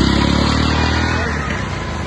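Small engine of an auto-rickshaw (three-wheeler tuk-tuk) running at low speed as it drives past, easing off slightly toward the end.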